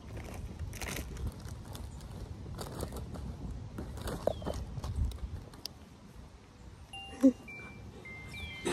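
Rustling and handling noises as a fabric bag is rummaged through, over a steady rumble of wind on the microphone, with one short louder sound near the end.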